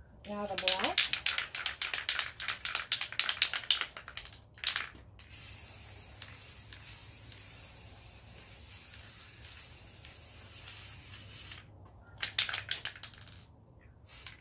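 An aerosol spray-paint can shaken, its mixing ball rattling rapidly for about four seconds. It then sprays in a steady hiss for about six seconds as paint goes onto the board, and is shaken again briefly near the end.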